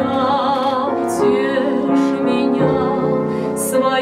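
A woman singing a Russian romance, holding notes with vibrato, accompanied by an upright piano. In the last part the piano carries on alone.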